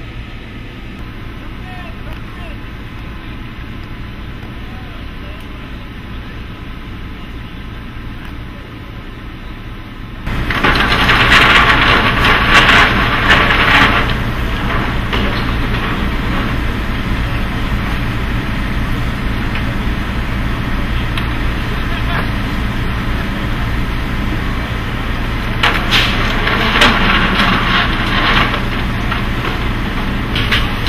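Work noise of a concert gear load-out: a steady low engine hum, then, after a sudden jump in level about ten seconds in, indistinct voices with knocks and clatter of equipment being handled, busiest twice, a few seconds in each half.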